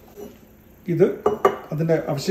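A glass jar being set down on a hard countertop: a couple of sharp glass knocks about a second and a half in.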